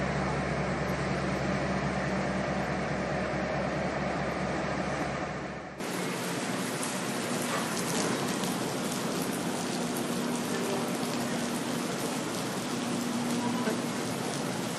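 Steady rail-yard noise: a low, even hum with steady engine tones from diesel locomotives. About six seconds in it cuts to a steady rushing noise with a faint hum from trains standing at a platform.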